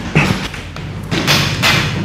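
A man sitting down on a chair at a table: a thump about a quarter second in, then about a second of rustling, scraping noise.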